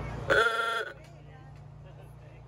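An old vehicle's horn sounding once: a single loud, pitched honk about half a second long, a little after the start.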